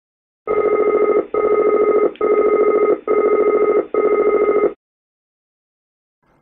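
ATR overspeed warning aural, the clacker: a loud, rapid clacking sounding in five bursts of under a second each with short gaps between, for about four seconds. It signals that a speed limit (VMO/MMO, VFE or VLE) has been exceeded.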